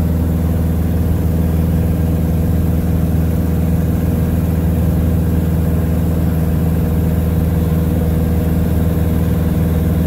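Piper Super Cub floatplane's engine and propeller droning steadily in level flight, heard from inside the cockpit, with no change in pitch.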